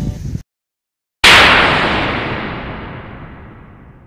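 A short dead silence, then about a second in a sudden loud crash-like hit that dies away slowly over the next few seconds.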